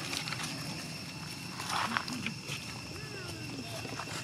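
Outdoor ambience on dry leaf-litter ground: a steady high-pitched drone with scattered rustles and clicks, a louder rustle about two seconds in, and a short gliding call near the end, under faint voices.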